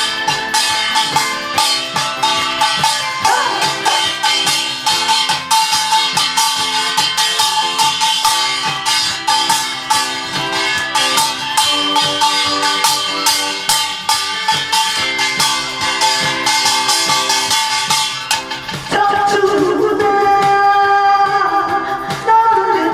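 Upbeat music played over the PA, driven by a fast, even rattling percussion beat. Near the end a wavering melody line comes in over it.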